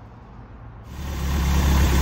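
1985 Nissan 720's Weber-carbureted four-cylinder engine idling steadily, coming in suddenly about a second in. It is running after its wiring harness has been relocated.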